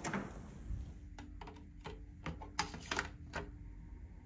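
Hotel room door being opened at its electronic key-card lock: a run of about seven sharp clicks and knocks from the lever handle, latch and door, starting about a second in.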